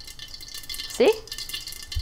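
Mustard seeds crackling and popping in hot coconut oil under a lid, a continuous fine patter of small pops, with a dull knock near the end.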